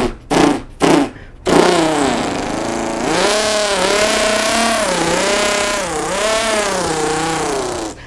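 A man imitating a two-stroke weed whacker with his mouth. Three short sputters as it is started, then a steady engine buzz that rises and falls in pitch as if revved, several times over.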